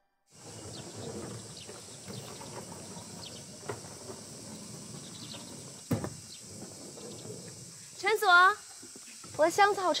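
Outdoor ambience with a steady high hiss, like insects, and a single knock about six seconds in. Near the end a woman's voice moans with a wobbling pitch, twice, straining under a suitcase that she calls heavy.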